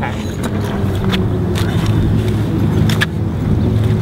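Steady low outdoor rumble of background noise, with a few short clicks and rustles as a person lies back on a bench against a backpack.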